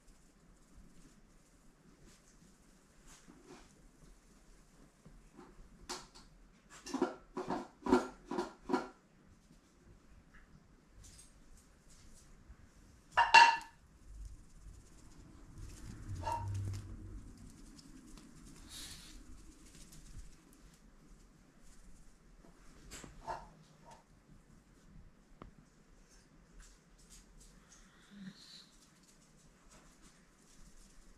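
A mostly quiet room with an animal calling: a quick run of about five short calls about seven seconds in, and one louder call about thirteen seconds in.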